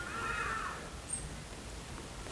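Faint calls of hadeda ibises, a few drawn-out, slightly wavering cries that fade out about a second in.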